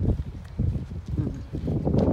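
Footsteps of a person walking on asphalt pavement, heard as irregular low thuds and rubbing close to a handheld camera's microphone.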